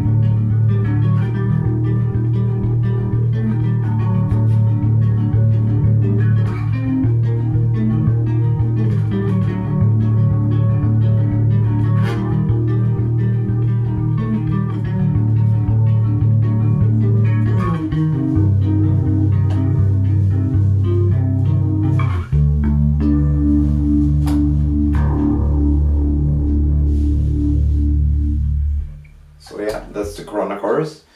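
Electric bass played through a TC Electronic Corona Chorus pedal: a fast, repeated picked riff with chorus on it. The bass note steps down twice, about two-thirds of the way through and again a few seconds later, then the playing stops shortly before the end.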